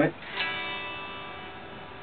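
Open strings of a 2015 Gibson Les Paul Classic strummed once, about half a second in, the chord ringing and slowly fading. It is the calibration strum of the G-Force robot tuning system, played with the guitar in standard tuning.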